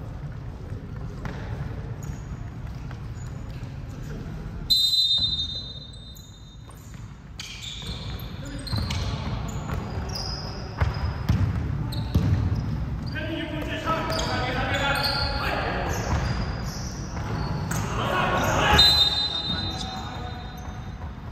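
Basketball game sounds in a large gym hall: a referee's whistle blows sharply about five seconds in and again near the end, with the ball bouncing on the hardwood and players calling out between.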